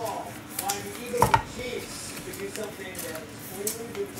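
Football trading cards being handled and laid down on a table: light taps and slides of card stock, with two sharper taps a little over a second in.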